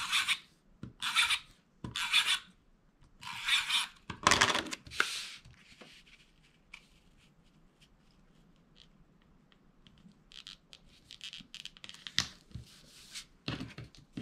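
A hand-held tape runner drawn along the back of a small cardstock mat in about six short strokes, laying down adhesive. Near the end come fainter scratches as the mat is pressed and rubbed down by hand onto the card.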